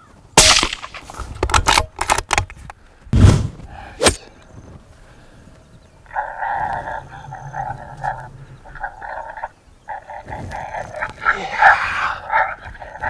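A suppressed rifle shot cracks about half a second in, followed by a string of smaller sharp clicks and knocks and another loud report about three seconds in. From about six seconds on, a pulsing pitched sound in two bands continues.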